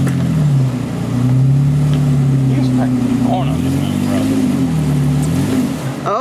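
Jeep Wrangler engine working under load as it crawls up a steep, slick clay rut, its revs rising and falling several times as the throttle is worked.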